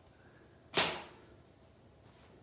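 A cotton T-shirt whipped through the air and snapped open: one quick, loud whoosh that fades within a fraction of a second.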